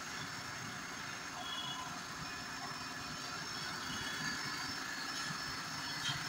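Maruti Suzuki WagonR engine idling steadily with the AC running while its refrigerant gas is recharged.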